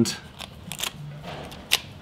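Paper labels being peeled off the end of the strip at a plastic handheld pricing gun: a few light clicks and rustles, the sharpest click near the end.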